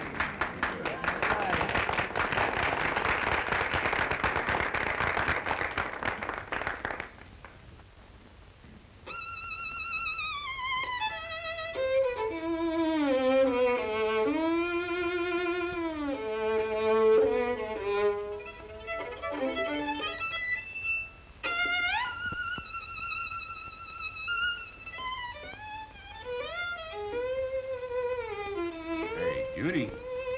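About seven seconds of dense crowd noise, then a solo violin plays a slow melody with wide vibrato and slides between notes.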